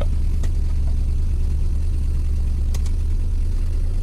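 Maruti Suzuki Alto's three-cylinder petrol engine idling steadily with a battery terminal disconnected, so it is running on the alternator alone, a sign that the alternator is charging. A few faint clicks come over the steady low hum.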